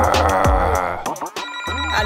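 Upbeat background music. About one and a half seconds in, a steady electronic phone ringing tone joins it.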